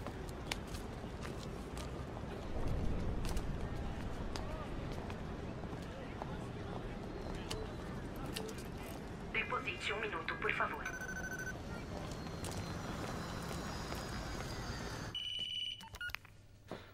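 Street background sound with scattered clicks; about nine seconds in, a pay phone is dialled in a quick run of short electronic beeps, and near the end a steady telephone tone sounds for under a second.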